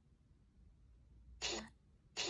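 Necrophonic ghost-box app playback: a low background hum, then about one and a half seconds in a single short hissing burst of sound.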